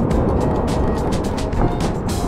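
Background music laid over the steady rush of churning whitewater foam on a shallow beach break, heard close on the action camera's microphone.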